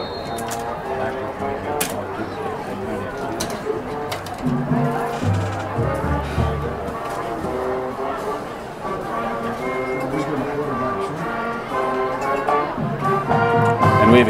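A band with brass playing a tune, held notes stepping up and down with low bass notes underneath, over the murmur of voices.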